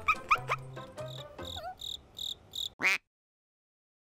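Comedy sound effects over light background music: a few short rising squeaks, then a run of about five quick high-pitched beeps like a warning alarm, ending in a fast rising whoosh and then dead silence.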